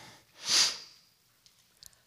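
A short, sharp intake of breath, a sniff close to a podium microphone, about half a second in, then a few faint clicks.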